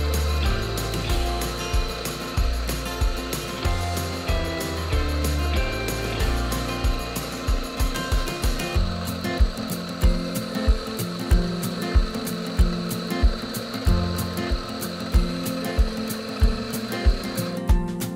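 Electric coffee grinder grinding espresso beans into a portafilter: a steady high-pitched whine with a grinding hiss that stops shortly before the end. Background acoustic guitar music with a regular beat plays throughout.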